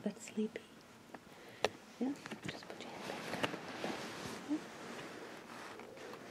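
Soft whispering, with a single sharp click about one and a half seconds in.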